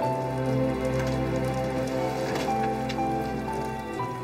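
Background music of soft held notes that change slowly, over a steady low drone.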